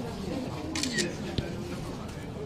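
A quick burst of several camera shutter clicks a little under a second in, with another single click shortly after, over faint voices.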